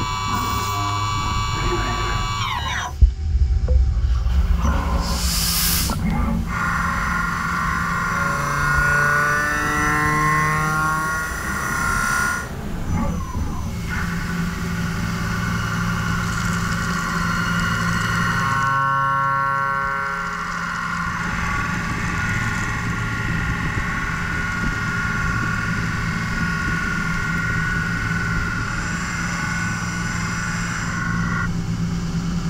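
CNC machine cutting cast iron, first with a drill and then with a single-insert cutter, with sustained cutting and spindle tones that shift in pitch and character every few seconds as the cuts change. A brief sharp knock about three seconds in.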